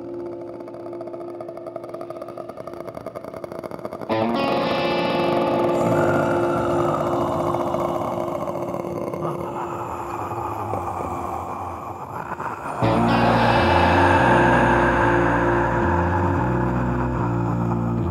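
Norwegian black metal band music with distorted electric guitar. A held, quieter passage gives way to a sudden louder wall of guitar about four seconds in, and a heavier section with moving low bass notes enters a few seconds past the middle.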